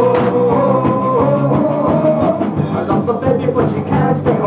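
Live rock band playing: electric guitars, bass guitar and drums, with a sustained lead line over a steady drum beat.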